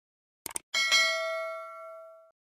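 Quick double mouse-click sound effect followed by a bright bell ding that rings on and fades over about a second and a half, the chime of a YouTube subscribe-and-notification-bell animation.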